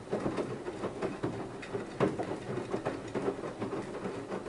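BEKO WMY 71483 LMB2 front-loading washing machine in the wash phase of its Dark Textiles 40-degree program: the drum turns and wet laundry tumbles and sloshes in sudsy water, with irregular thuds and splashes.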